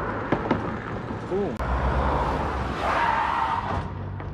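Street traffic at a speed bump: a car passes with engine rumble and tyre noise, a few short knocks among it.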